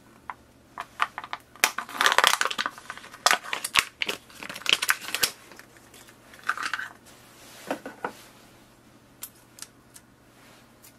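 Clear plastic blister packaging of ink cartridges being handled and pulled apart by hand: crinkling and crackling with clicks, loudest from about two to five seconds in, then a few shorter spells and scattered ticks.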